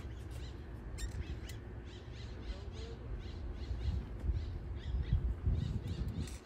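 Birds chirping, a few short high calls each second, over a low rumble of wind on the microphone.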